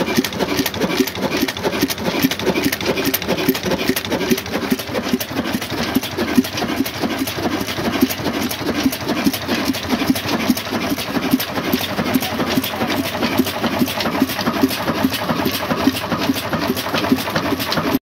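Old black Ruston-pattern 'desi' horizontal single-cylinder diesel engine with a large flywheel running steadily, a loud, even rhythmic beat with mechanical clatter from the valve gear.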